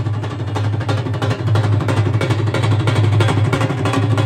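Several dhols, big double-headed barrel drums, beaten together in a fast, dense rhythm, with a steady low hum underneath.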